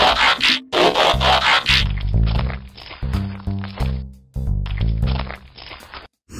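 Background music with shifting bass notes. In the first two seconds there are two loud bursts of rushing noise over it; the second stops sharply.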